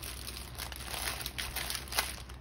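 Clear plastic sticker packaging crinkling as it is handled: a run of small irregular crackles.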